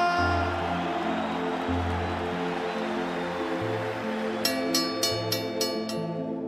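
Background music of slow, sustained low notes. Under it, for the first few seconds, is the rushing noise of an arena crowd after the ring introduction. About four and a half seconds in, a quick run of about six short, sharp struck notes comes in.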